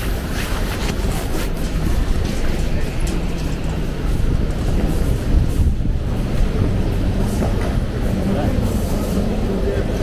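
Airport terminal hall ambience: a steady low rumble with indistinct voices of people around and occasional faint footsteps and clicks.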